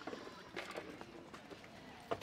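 Faint clicks and rattles of a BMX bike as it sets off rolling across tarmac.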